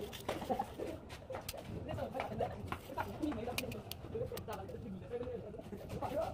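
Short scrapes and ticks of a steel blade cutting into wet cement plaster, under background voices and cooing.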